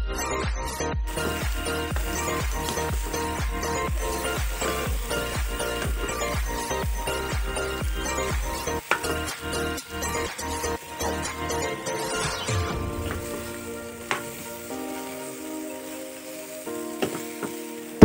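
Drumstick (moringa) pods and potato pieces sizzling as they fry in a wok, stirred with a metal spoon, starting about a second in. Background music with a steady beat plays throughout and grows quieter after the middle.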